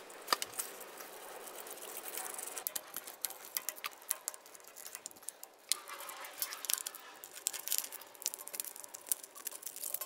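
Light scattered clicks and rattles of a plastic motor switch box and its wires being handled, as the wires are pulled out through the box to remove it.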